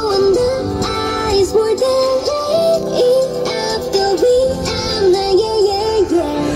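Live busking performance: a singer's voice, amplified, carrying a melody in phrases that glide between notes over instrumental accompaniment.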